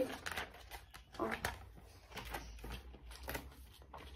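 Paper rustling and light crackles as a spiral-bound notebook is opened and its pages turned, in a few short bursts.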